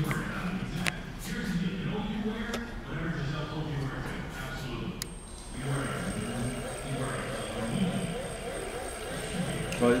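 Indistinct talking in a large, echoing room, with a faint, steady high-pitched whine that starts about halfway through.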